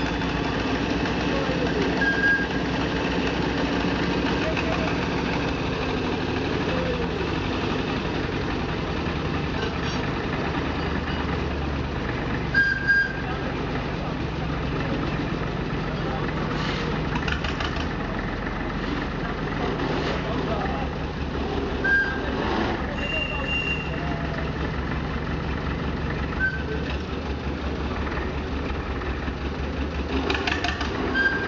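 Small narrow-gauge diesel locomotive engine idling steadily with a low, even chugging pulse, with people talking in the background.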